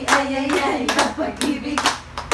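A group of women clapping their hands in a steady rhythm, about two claps a second, while singing the 'ay, ay' refrain of a Filipino clapping song.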